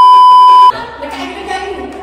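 Loud steady 1 kHz test-tone beep, the sound of a TV colour-bars test signal used as an editing effect, cutting off sharply about two-thirds of a second in.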